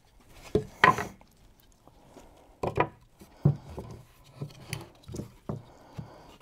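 Scattered light knocks and rubbing of wood: a woofer and a plywood speaker baffle being handled on a workbench as the driver is set into its freshly routed flush-mount recess.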